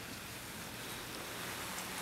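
Faint, steady background noise with a low hum and no distinct events: room tone.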